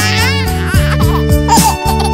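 A cartoon baby's voice giggling briefly at the start over cheerful children's background music, with the music running on and a string of falling pitch slides.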